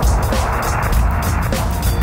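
Electronic synth track with heavy synth bass and a steady beat. A rushing noise swells up in the middle of the sound about a quarter second in and fades away about a second and a half in.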